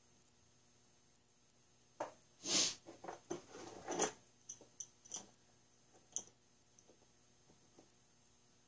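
Small metal hand tools being picked up and moved about on a workbench mat. About two seconds in there is a quick cluster of clinks with a short scrape, then a few scattered light clicks.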